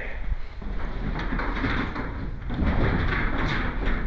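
Old freight elevator rumbling and rattling, starting about half a second in, with a steady low hum under it.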